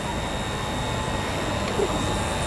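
Steady outdoor crowd and street background: a low rumble and hiss, with a faint steady high-pitched tone running through it.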